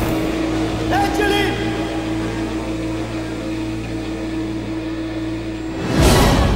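Dark horror-trailer sound design: a low, steady drone with a held tone, and a brief voice-like cry that rises and falls about a second in.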